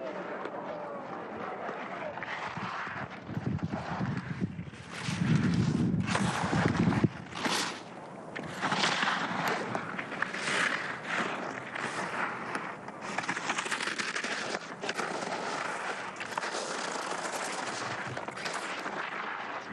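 Racing skis carving and scraping on hard, icy snow through giant slalom turns, the edges chattering and the noise swelling about once a second with each turn. A louder, lower rush comes about five to seven seconds in.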